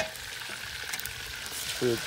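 Pieces of meat frying in hot oil in a pot, a steady sizzle, while a spoon stirs them with a couple of light clicks.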